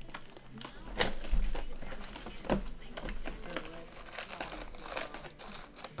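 Plastic shrink-wrap crinkling and tearing as it is stripped off a sealed Panini Flux basketball card hobby box, an uneven run of crackly rips and rustles that is loudest about a second in.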